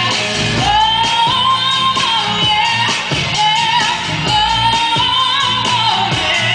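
Female pop singer singing live with a rock band, holding long notes with vibrato over a steady drum beat.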